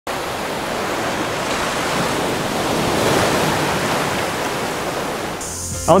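Ocean surf washing onto a flat sandy beach: a steady rushing that swells a little midway. Near the end a high insect trill and a man's voice begin.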